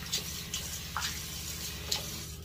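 Tap water running into a bathroom sink as a shaving brush handle is rinsed under it, with a few short knocks and clicks of handling.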